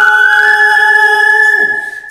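A cappella male voices hold a chord while a high, whistle-like note slides up slightly and then holds for nearly two seconds. The lower voices drop out just before the whistle note ends.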